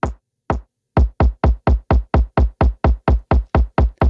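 Electronic kick drum from a bass house intro playing alone, one hit about every half second, then from about a second in doubling to about four hits a second as a kick roll into the buildup. The kick is filtered with its lows rolled off and gains low end and punch as the buildup nears.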